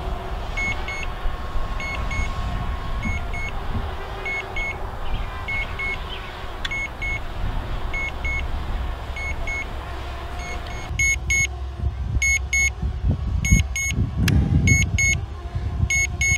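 A drone's remote controller beeps steadily in short high-pitched double beeps while return-to-home is running, over a low rumble of wind on the microphone. The beeps stand out more clearly in the last few seconds, where the wind gusts harder.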